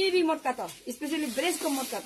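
A woman talking in short phrases, with a short hiss near the end.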